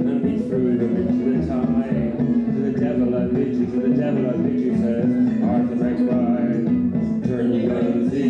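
Guitar playing a traditional Irish tune over looped layers from a loop station, with a steady held drone underneath the moving notes.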